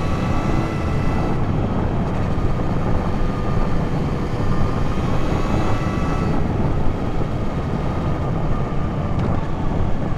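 Yamaha XSR900's three-cylinder engine running steadily while riding, under heavy wind and road rush.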